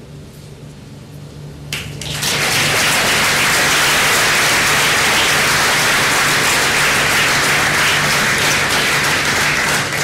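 Large audience applauding, starting about two seconds in and holding steady to the end.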